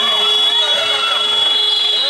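A loud, steady high-pitched signal tone that starts abruptly and holds level for about two seconds.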